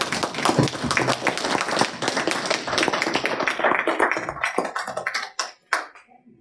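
A small group applauding with hand claps, thinning to a few last separate claps near the end.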